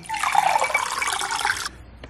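Infused water running from the spigot of a glass drink dispenser into a glass with ice, a steady pour of about a second and a half that cuts off when the tap is closed.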